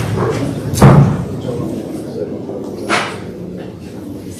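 Indistinct voices in a room, with a sharp thump about a second in and a smaller knock near three seconds.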